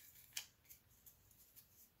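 Near silence with faint handling of a stack of Pokémon trading cards: a few soft clicks, the sharpest about a third of a second in.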